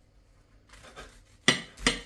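A serrated bread knife sawing quietly through pie pastry, then two sharp clinks near the end as the blade meets the ceramic plate.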